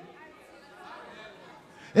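Faint murmur of background voices between the loud bursts of preaching.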